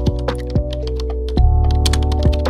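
Computer keyboard typing clicks over background music: a few scattered keystrokes, then a quick run of them in the second half.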